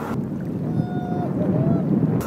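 Wind on the microphone and water rushing around a kayak at sea, with a person's voice calling out twice: a held note, then a shorter rising-and-falling one.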